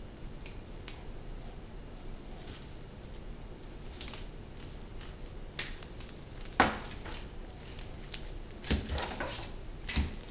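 Scattered soft clicks, taps and scrapes of a boning knife working along a whole fish's bones and against a plastic cutting board as the flesh is separated, with one sharper knock about two-thirds of the way through.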